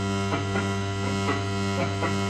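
Live experimental electronic music: a steady low drone with overtones, with sharp plucked-sounding clicks falling about two or three times a second.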